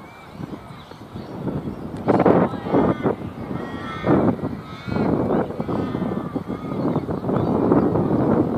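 Young cricketers' voices shouting and calling on the field in several short bursts during the play.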